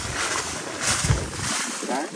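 Wind buffeting the microphone, a low rumble over a steady hiss, with the rumble cutting out about one and a half seconds in.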